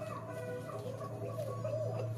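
Chicken clucking, a run of wavering calls, over a steady low hum.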